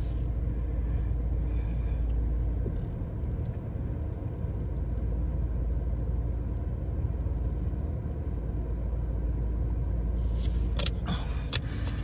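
Steady low rumble of a stationary car's idling engine and ventilation, heard from inside the cabin, with a few light clicks near the end as a plastic water bottle is handled.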